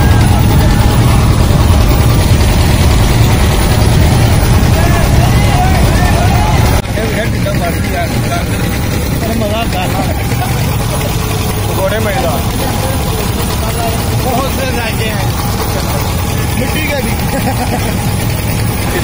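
Steady low rumble of a running engine, with voices chattering in the background. It drops in level suddenly about seven seconds in.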